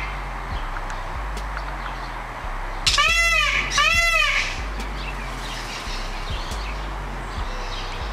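Indian peafowl (peacock) giving two loud calls in quick succession about three seconds in, each rising and then falling in pitch.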